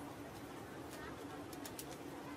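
Street-stall background: faint, indistinct chatter over a steady low hum, with a few quick light clicks about three-quarters of the way through.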